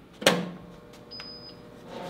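A sharp clunk about a quarter second in, as the Lanphan LPSD-2G laboratory spray dryer is switched on, followed by a steady low electrical hum from the machine. About a second in, a thin high tone sounds for about half a second as its control screen boots up.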